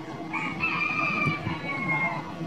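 A rooster crowing once: one long drawn-out call that starts about a third of a second in and falls slightly in pitch as it ends.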